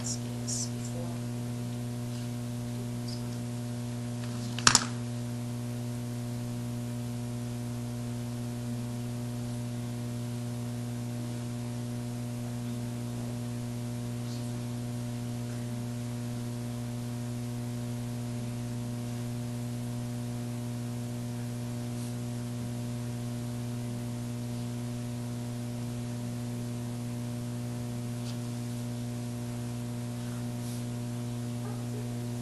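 Steady electrical mains hum on the meeting room's sound system, with a single sharp click about five seconds in.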